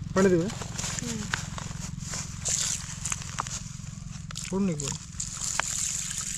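Light crinkling and clicking of a thin plastic spice packet being handled over a steel pan, with a steady low hum and a faint high hiss underneath. Two short vocal sounds come near the start and about two-thirds of the way in.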